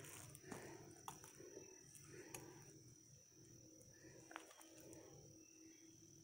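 Near silence: quiet woodland ambience with a faint steady high-pitched tone and a few faint ticks.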